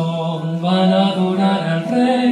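Slow sung music, a voice holding long notes that step from one pitch to the next over accompaniment, as in a hymn closing the Mass.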